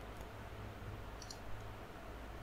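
A few faint clicks from computer keyboard keys, one near the start and a quick little cluster just past a second in, over a low steady hum.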